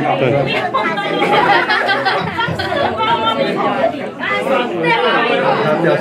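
Chatter of many people talking over one another, with no single voice standing out.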